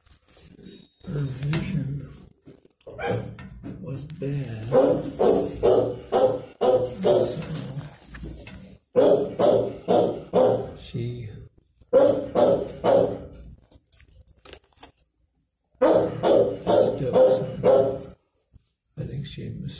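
A dog barking in several runs of quick, repeated barks with short pauses between them.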